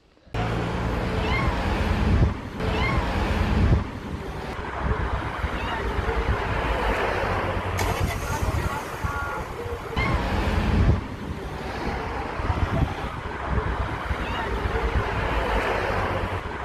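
A cat trapped in a car's door sill crying, a few short rising-and-falling meows, under heavy wind noise on the microphone and street noise.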